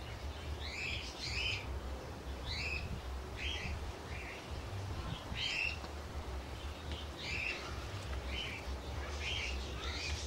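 A small bird chirping: short, high chirps repeated irregularly, about one every half second to a second, over a low steady rumble.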